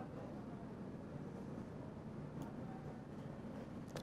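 Low room tone and steady hiss of a presentation room, with a single faint click about two and a half seconds in.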